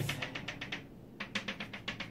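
Chalk tapping rapidly on a blackboard, dotting a guide line. It comes in two quick runs of about ten taps a second, with a short pause about a second in.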